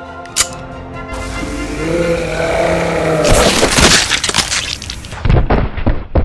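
Sound effects of a sci-fi ray gun over background music: a sharp trigger click, then a loud blast about three seconds in, with more booming hits near the end.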